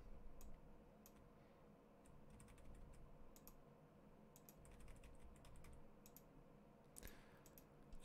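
Near silence with faint, scattered clicks from a computer mouse and keyboard, in small clusters, over a faint steady room hum.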